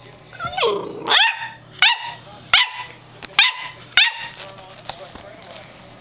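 Eight-week-old German Shorthaired Pointer puppy giving a string of about six high, squeaky puppy barks, each rising in pitch, one every second or less; they stop a little after four seconds in. These are among her first barks.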